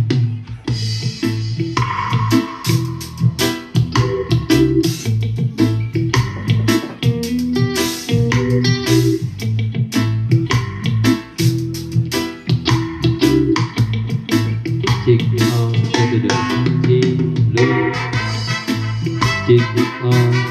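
Recorded music played loud through a GMC 897W 10-inch portable speaker as a sound test, with heavy bass and a steady rhythm.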